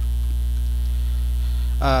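Steady low electrical mains hum on the recording. A man's brief 'uh' comes near the end.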